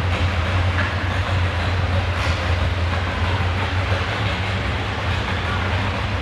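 Farmall 560 tractor engine running at a steady idle, hooked to the pulling sled before its pull: a loud, even, low rumble with no revving.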